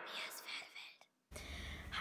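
A faint whispered voice for about a second, then a brief dead-silent dropout at an edit, then quiet room hiss.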